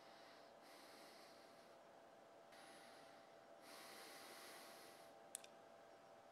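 Faint breaths blown out through the mouth: three or four exhalations, the longest a little past halfway. A single sharp click follows near the end.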